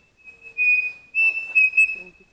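Pavonine cuckoo singing: long, clear whistled notes held at one high pitch, louder in the second half.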